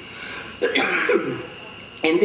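A man coughing twice into his fist close to a microphone, clearing his throat, the two short coughs coming a little past halfway through.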